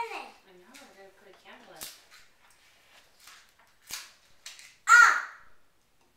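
A small child's voice: a trailing vocal sound at the start and a brief high squeal about five seconds in, the loudest thing here. A few short knocks and clicks from handling at the table are heard between them.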